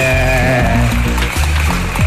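Reggae backing beat playing, its bass pulsing steadily. A long held note slides down, then holds and fades out within about the first second.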